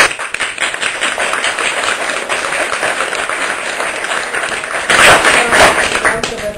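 Audience applauding: a dense crowd of hand claps that starts suddenly and grows louder near the end.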